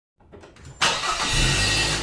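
A car engine sound, starting with a sudden loud burst about a second in, with a deep rumble coming in under it.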